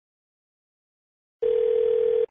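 Silence, then a telephone ringback tone over the phone line starts near the end: one steady tone with a thin, phone-line quality, the outgoing call ringing at the other end.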